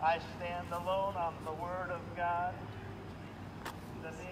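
A man's voice shouting from a distance, unintelligible, in the first two and a half seconds, over a steady low rumble of passing car traffic. There is a single sharp click near the end.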